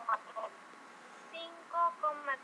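A faint, thin voice coming over a video-call connection in a few short phrases: a student answering with the point's coordinates, minus five, three.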